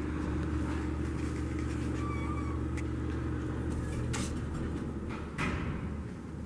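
Steady mechanical hum with a faint held tone, and two soft knocks about four and five and a half seconds in as the hydraulic elevator's doors close.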